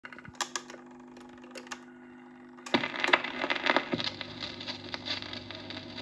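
1950s Dansette Major record player: a low hum with a few clicks, then about three seconds in the stylus drops onto a 45 rpm single with a sharp thump, and the lead-in groove crackles and pops before the music.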